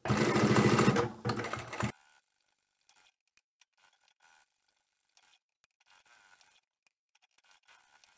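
Domestic sewing machine stitching through layered fabric in a fast, even run for about two seconds, easing off after the first second and then stopping.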